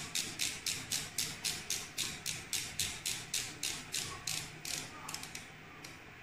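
A steady run of ratcheting clicks, about four a second for nearly five seconds, then a few quicker clicks near the end. It is typical of a micropipette's plunger knob being turned to set a new volume.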